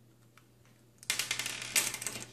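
Small screw and screwdriver on the plastic pinky rest of a Mad Catz R.A.T. 9 mouse: nearly quiet for the first second, then about a second of quick clicking and rattling of small metal and plastic parts as the screw comes free and is set down on the desk.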